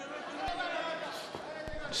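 Arena crowd murmur with a few dull thuds of gloved punches as two heavyweight boxers trade in a clinch, one about half a second in and a couple more near the end.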